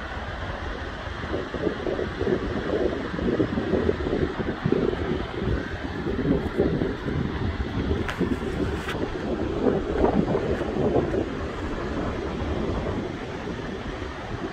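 Wind buffeting the phone's microphone in uneven gusts, with a couple of faint clicks about eight seconds in.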